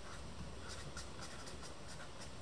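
Felt-tip marker writing on paper: a faint, irregular run of short pen strokes.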